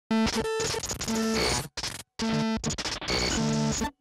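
Glitchy electronic music: a chopped, stuttering collage of held tones and noise with a looped voice sample repeating "it's true". It breaks off abruptly into dead silence twice around the middle.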